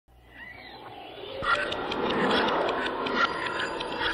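Spooky intro to a children's Halloween song: sound fading in from silence and swelling by about a second and a half into a dense, noisy mix with repeated animal-like calls.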